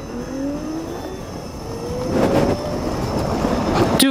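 Electric motorcycle's 3000-watt motor whining under hard acceleration from a standstill, its pitch rising steadily as speed builds, over wind rushing past the microphone that grows louder.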